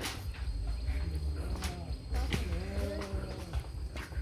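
Footsteps on a metal-mesh suspension footbridge, a few sharp knocks of feet on the mesh deck over a steady low rumble of wind or handling on the microphone. A faint, drawn-out pitched call sounds in the background about midway.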